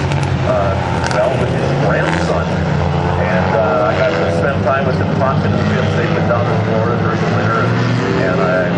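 A pack of Hornet-class dirt-track cars, small four-cylinder compacts, running together as the field rolls around the track. Several engine notes overlap in a steady drone.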